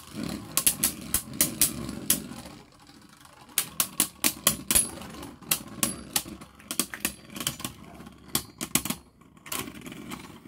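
Two Beyblade Burst spinning tops clashing in a plastic stadium: rapid, irregular sharp clacks as they strike each other, over the low whir of their tips spinning on the plastic floor. The clashes ease off briefly about three seconds in, then come thick again.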